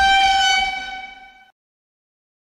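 A single sustained horn-like note, steady in pitch, loudest in the first half-second, then fading and cutting off abruptly about a second and a half in.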